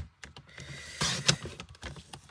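Paper trimmer being worked: a run of light clicks and taps from its plastic cutting arm and blade carriage, with a short scraping stretch about a second in as the blade slides along the card.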